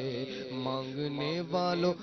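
A man's voice chanting a melody through a microphone, with no instruments. He holds long notes that slide and waver in pitch, and a louder phrase starts near the end.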